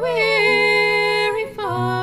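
Music: a female voice singing a slow folk melody with held, gliding notes over low sustained accompaniment, with a brief break and a new phrase about a second and a half in.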